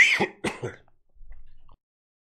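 A man clearing his throat harshly, two short rasping bursts about half a second apart.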